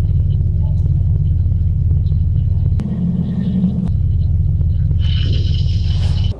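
A loud, steady low rumbling drone from the film's soundtrack. It shifts up in pitch for about a second midway, and a higher shimmering tone joins near the end.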